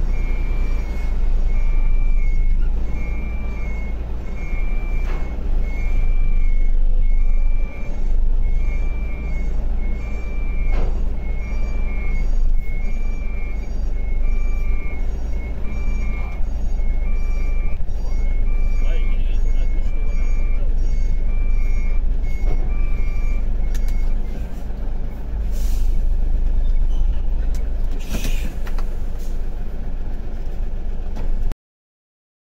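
Truck's reversing alarm beeping at a steady pace over the low, steady running of the tractor-trailer's diesel engine heard from inside the cab while it backs up. The beeping stops about three-quarters of the way through, and a short sharp hiss of air comes near the end.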